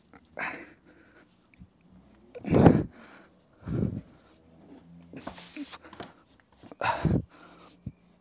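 A man's short, effortful grunts and heavy breaths, five bursts about a second apart, the loudest about two and a half seconds in, as he strains to pull out a tightly wedged gym floor mat.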